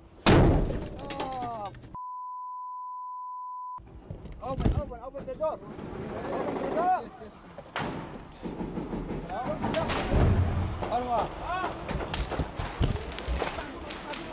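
A loud blast strikes the armoured MRAP: a direct hit. All other sound then cuts out for nearly two seconds, leaving one steady high tone, before men's shouting voices return, with thuds and knocks around the vehicle.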